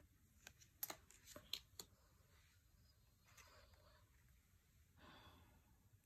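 Oracle cards being handled and swapped by hand: a quick run of light clicks and taps about a second in, then two soft sliding swishes, one in the middle and one near the end.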